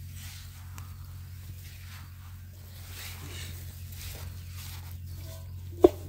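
Faint rustling and handling noises in grass over a steady low hum, with one sharp click near the end.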